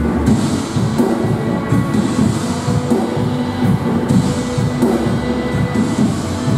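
Live worship music: a band playing with a small group of singers on microphones, running continuously at a steady level.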